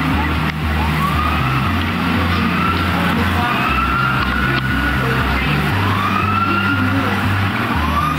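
Emergency vehicle sirens wailing, their rising and falling tones overlapping one after another over a steady wash of street noise.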